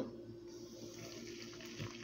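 Hot water poured from a stovetop kettle into a saucepan of loose black tea leaves: a faint, steady stream of pouring water.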